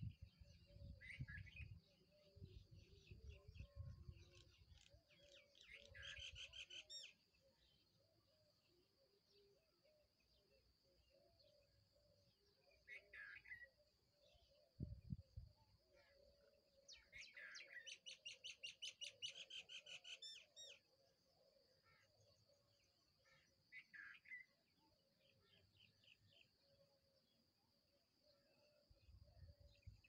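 Near silence with faint bird chirps: short scattered calls and two rapid trills of chirps, the longer one lasting about three seconds past the middle. A few low thumps near the start and about halfway through.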